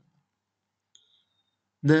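Near silence broken by one faint, short click about a second in, followed by a brief faint high tone.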